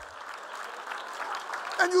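Audience applauding steadily, until a man's voice comes back in near the end.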